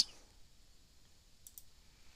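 Near silence in a pause of a voice recording, with a couple of faint, brief clicks about one and a half seconds in.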